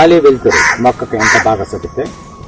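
A person talking, with two short harsh calls over the voice about half a second and a second and a quarter in.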